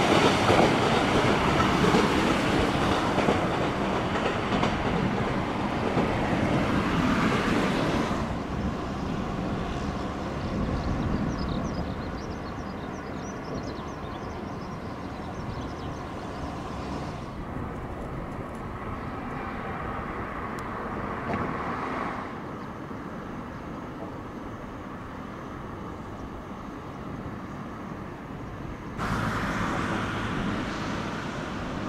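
Shinkansen trains, the E956 ALFA-X test train and an E3 series set, running along the tracks with steady wheel-on-rail noise. It is loudest in the first eight seconds, then drops and changes suddenly several times before rising again near the end.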